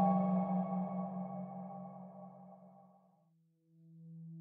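Ambient background-music drone of held tones fading out over about three seconds. After a brief silence, a new low drone fades in near the end.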